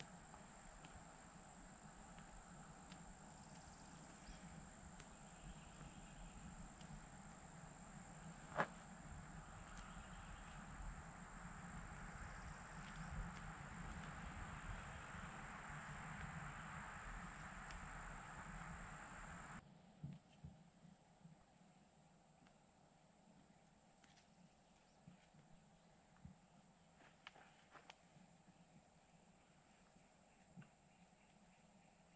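Near silence: faint outdoor background with a steady high insect drone. There is a single sharp tick near 9 seconds, and faint small rustles and ticks of hands working soil. The background hiss drops away abruptly about two-thirds of the way through.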